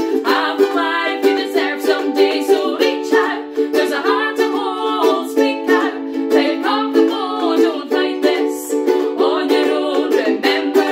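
Two ukuleles strummed in a steady rhythm, accompanying two women singing.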